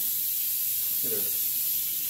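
Electrostatic powder coating gun blowing powder on compressed air: a steady hiss, while the spray pedal is held down. A short voice sound comes about a second in.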